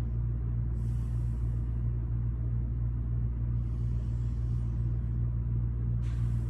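Steady low hum of building ventilation, with the soft hiss of slow deep breaths about a second in and again around four seconds in.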